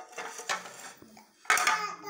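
Dishes and cutlery clinking: two sharp clatters about a second apart, the second the louder, with voices in the background.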